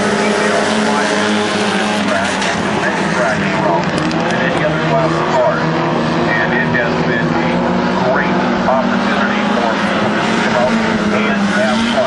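Several Hornet-class compact race cars running laps together, their small four-cylinder engines making a steady, overlapping drone.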